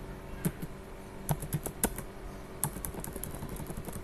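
Computer keyboard keys clicking in irregular strokes, some in quick runs, as text is typed and deleted with backspace.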